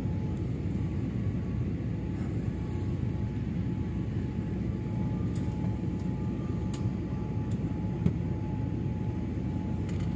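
Steady cabin noise of a jet airliner in flight: engine and airflow rumble heard from inside the cabin, with a faint steady whine above it.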